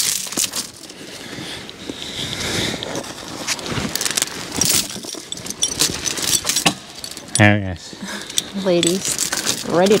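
Steel logging chain clinking and rattling, a string of sharp metallic clinks as it is wrapped around a log and hooked for skidding.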